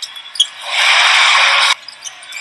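A loud burst of steady hiss-like noise, about a second long, that swells in and cuts off abruptly, after a couple of faint clicks.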